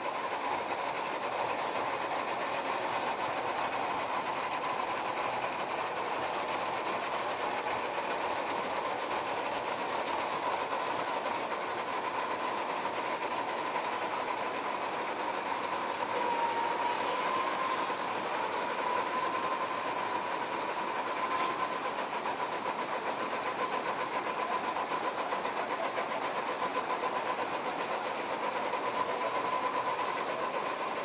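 Heavy truck engines running steadily, with a constant high whine that wavers briefly a little past the middle.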